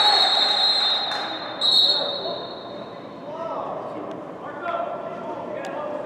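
Referee's whistle blown twice, a shorter blast at the start and a stronger one about a second and a half in, over shouting voices; the whistle stops play for a foul that earns a card.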